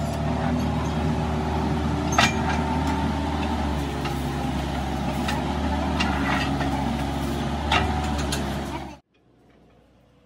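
Steady hum of machine-shop machinery, likely a lathe motor running, with a few light metal clicks and knocks as the drive shaft is handled. The hum cuts off suddenly about nine seconds in.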